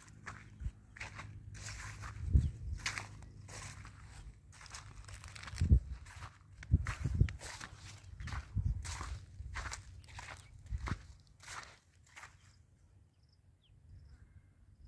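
Footsteps of a person walking on soil among low watermelon vines, about two steps a second, stopping about a second and a half before the end.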